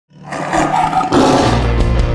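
A lion's roar sound effect rising out of silence, running into music with a steady bass from about a second and a half in.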